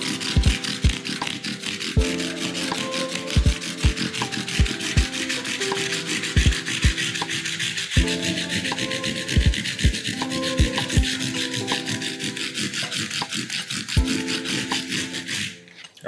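220-grit sandpaper, held curved over a finger, rubbed back and forth along the edge of a rosewood guitar fretboard in quick, even strokes to roll over the sharp edge. It stops shortly before the end. Background music with a beat plays underneath.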